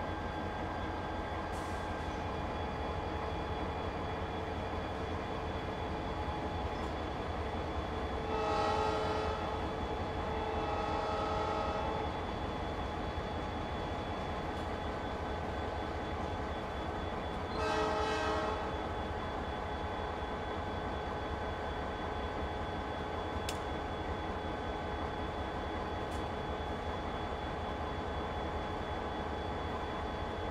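Diesel locomotive horn sounding three blasts, two close together about eight to twelve seconds in and a shorter one about eighteen seconds in, over the steady low rumble of a locomotive working freight cars in a railyard.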